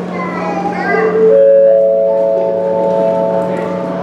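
Children's voices in a crowd, then, about a second in, a rising four-note chime, each note held so that all four ring together.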